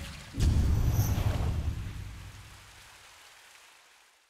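Logo sting sound effect: a deep boom with a splashing hiss about half a second in, fading away over the next three seconds, with a short bright ping around one second.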